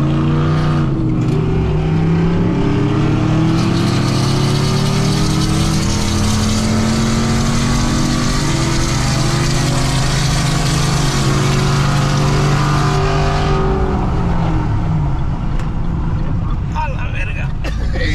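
Pickup truck V8 engine pulling at full throttle in a roll race, heard from inside the cab: the pitch climbs through the gears for about fourteen seconds, then the throttle is let off and the engine sound falls away.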